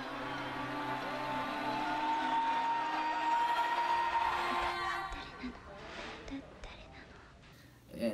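Anime film soundtrack excerpt: music with a long held high tone over lower sustained notes, with faint voices under it, dying away about halfway through to quiet scattered sounds.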